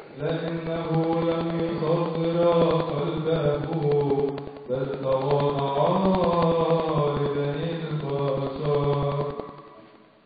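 A man's solo voice chanting Coptic liturgical text into a handheld microphone in long, held, melismatic lines. It pauses briefly about halfway and fades out near the end.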